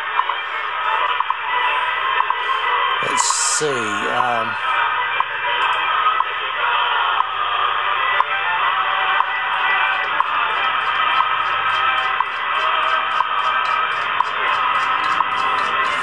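Shortwave receiver audio of the WWV time-signal station on 5 MHz, picked up by an RTL-SDR dongle in AM mode and played over a laptop speaker. The audio is hissy and static-laden and cut off above about 4 kHz, with another signal coming in on top of it. The owner suspects the RF gain is set too high and the receiver is overloading.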